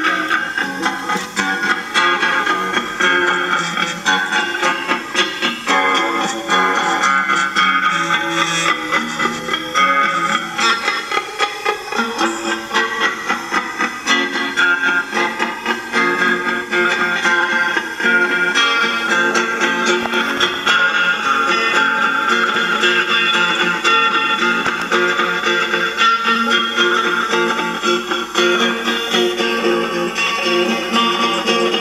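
Guitar music, with a guitar plucking a quick, steady run of notes.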